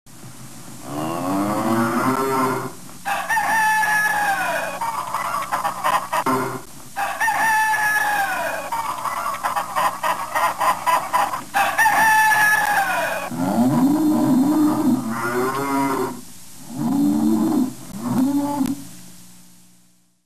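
Barnyard animal calls from a cartoon soundtrack: a run of long calls, several falling in pitch, then lower calls in the second half. They fade out at the end.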